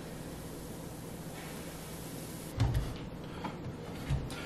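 Steady kitchen hiss and low hum. About two-thirds through, a dull knock and a few light clicks and clatter as kitchen things are handled.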